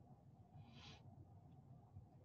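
Near silence: faint room tone with a low hum, and a brief faint hiss a little under a second in.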